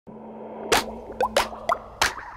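Title-card intro music: a steady electronic hum under four quick cartoon plops. Each plop has a short upward sweep in pitch, and the first, under a second in, is the loudest.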